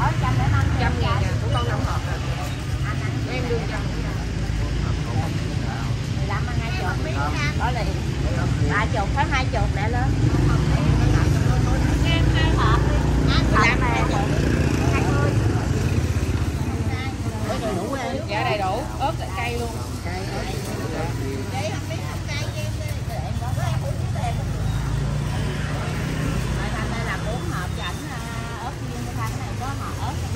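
Busy street-stall ambience: voices of several people talking at once over a steady low rumble of road traffic.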